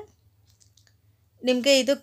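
Speech, then a pause of over a second of near silence with only a faint low hum; talking resumes about a second and a half in.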